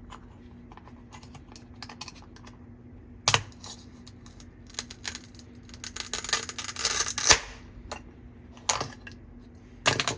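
A plastic toy strawberry being cut with a toy plastic knife on a plastic cutting board. It opens with scattered plastic taps and clicks. About six seconds in, the velcro holding the halves together rips with a crackle that ends in a sharp snap as they come apart, and the pieces are then tapped down on the board.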